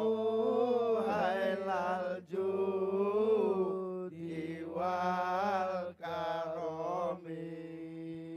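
A man singing a sholawat, an Islamic devotional song, through a PA system in long drawn-out phrases of held, wavering notes with short breaths between them, over a low steady backing note.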